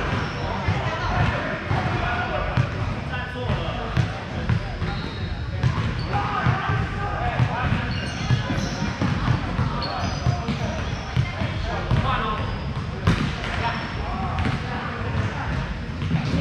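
Volleyballs being struck and bouncing on a hardwood gym floor, a quick string of sharp impacts scattered through, under indistinct players' voices in a large hall.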